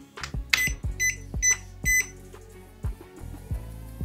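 DEKO DKLL12PB1 green-beam 3D laser level beeping four times, about half a second apart, as it is switched on with its pendulum unlocked. Background music plays underneath.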